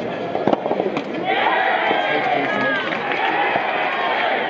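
Sharp pops of a soft tennis racket striking the soft rubber ball, a serve and a return in the first second, followed by loud shouting voices of players and supporters.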